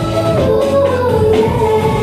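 K-pop song with a female vocal line over a steady bass beat, playing loudly.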